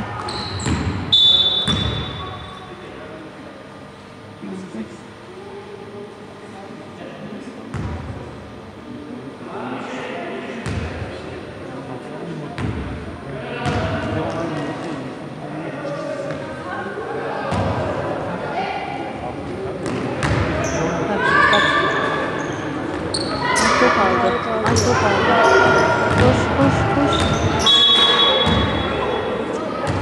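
Basketball bouncing on a hardwood court, with sharp impacts that echo around a large sports hall, mixed with players' and spectators' voices. Two brief high tones sound, one just after the start and one near the end.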